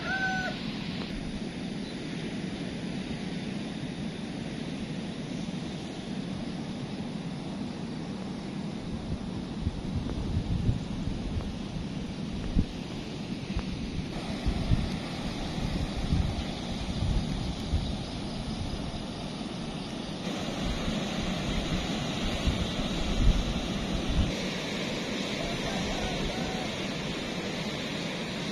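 Steady wash of ocean surf, with wind gusting on the microphone as an uneven low rumble through the middle stretch.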